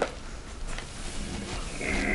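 Classroom room tone: a steady low hum and hiss with no clear strikes, and a faint higher-pitched sound starting near the end.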